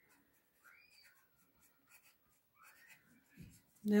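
Coloured pencil writing on paper on a clipboard: faint, irregular scratching strokes as letters are drawn, with a soft low thump near the end.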